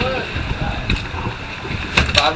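Wind buffeting the microphone, with faint voices in the background.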